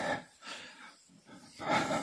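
Felt board eraser wiping a chalkboard: a few rough swishing strokes, one at the start and another near the end.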